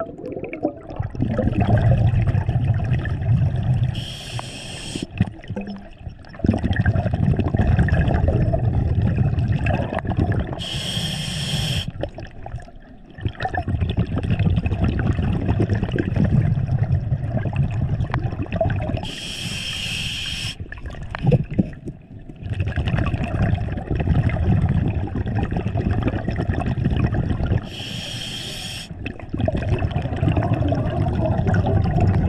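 Scuba diver breathing through a regulator underwater, about four breaths: each starts with a short hiss as the diver inhales, followed by a long bubbling rumble of exhaled bubbles.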